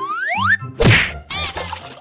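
Cartoon sound effects: a quick rising whistle, then a loud whack a little under a second in, followed by a brief warbling high-pitched squeal.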